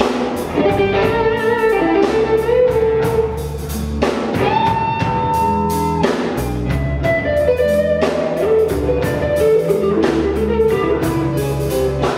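Live blues band playing with electric guitar and drum kit on a steady beat, and a long held high note about halfway through.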